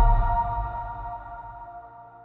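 The final chord of an electronic logo jingle ringing out: several held bell-like tones over a deep low swell, fading steadily away.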